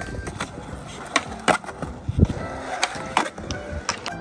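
Skateboard wheels rolling on a concrete skatepark deck, with several sharp clacks of the board's tail and trucks popping and landing, the deepest about halfway through. Background music plays underneath.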